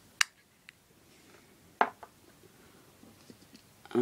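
Hard plastic action-figure parts being handled: two sharp clicks about a second and a half apart, with a few fainter ticks between and after.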